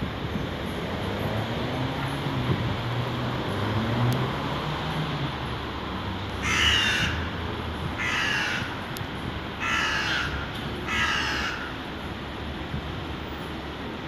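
A crow cawing four times, each call short and harsh, about a second and a half apart from about halfway through, over a steady outdoor rumble.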